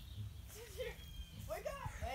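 Indistinct voices of several women talking and calling out to one another, with a low steady rumble underneath.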